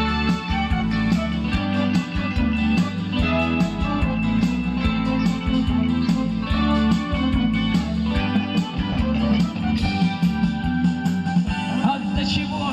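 Live band playing an instrumental passage of a song: a drum kit keeps the beat under an amplified guitar melody and a bass line.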